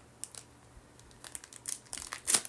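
An earring packaging bag being worked open by hand: a few faint, scattered crinkles and clicks.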